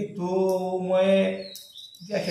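A man's voice chanting a mantra in one long held tone, which stops about a second and a half in.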